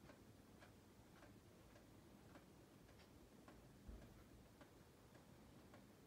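Near silence with faint, regular ticking, just under two ticks a second, and one soft low bump about four seconds in.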